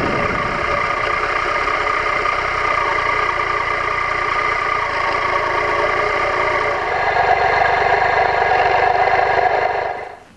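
Triumph Explorer's three-cylinder engine running steadily as the motorcycle rolls slowly, heard close up from a mount low on the bike; the engine note shifts about seven seconds in.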